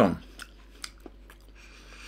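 A person chewing oven-baked potato balls with the mouth open, making scattered short wet clicks and smacks about twice a second.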